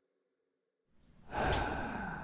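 Silence, then about a second in a man's audible sigh: one long breathy exhale that swells quickly and trails off.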